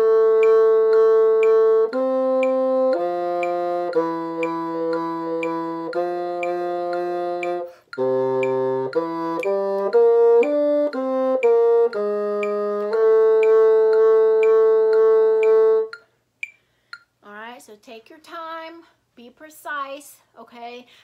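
Solo bassoon playing a short passage: long held notes, a quicker run of short notes about halfway through, then one final held note that stops about three-quarters of the way in. A steady tick keeps time underneath.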